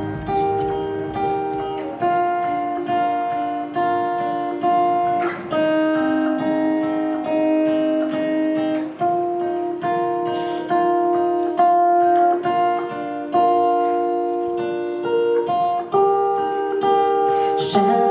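Acoustic guitar playing a fingerpicked introduction, its notes ringing and decaying, with the chord changing every two to four seconds.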